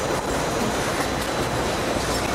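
Recycling-plant conveyor belt and metal-separating machinery running: a steady mechanical noise with no distinct knocks or impacts.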